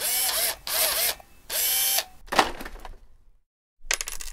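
Mechanical-sounding sound effects on an animated intro graphic: three short bursts, each about half a second long and the first two with a pitch that arcs up and down, then a sharp hit that fades away, and a click near the end.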